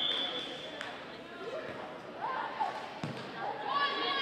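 A volleyball thumping twice in a gym: a light hit about a second in and a heavier one about three seconds in, amid shouts from players and spectators.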